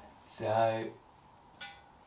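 A man's voice making one drawn-out hesitation sound, like a held 'um', followed by a light click about a second and a half in.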